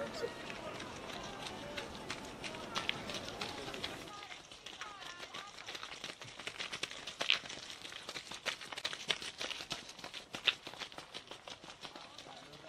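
Runners' footsteps on a gravel path, a quick, irregular patter of footfalls that becomes clear after about four seconds. A murmur of distant voices runs under the first few seconds.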